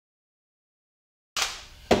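Dead silence for just over a second, then the handling noise of tools on a wooden board: a rustle that fades, and a sharp knock near the end.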